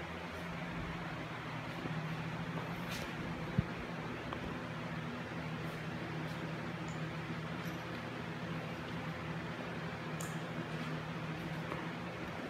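Steady low mechanical hum in a small room, with a single sharp click about three and a half seconds in.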